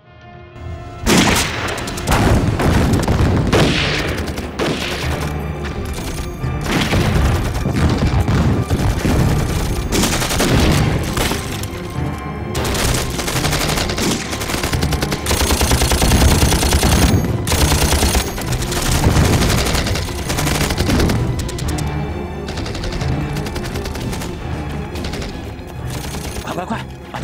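Film battle soundtrack: dense rifle and machine-gun fire with occasional booms, mixed with dramatic background music. It starts about a second in from silence and runs on without a break.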